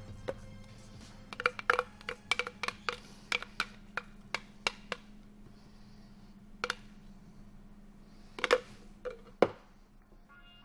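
A bar spoon knocking and scraping against the inside of a blender jar as thick frozen margarita is pushed out into a glass: a run of sharp, irregular clicks, thickest in the first half, with a few louder knocks near the end. Background music plays steadily underneath.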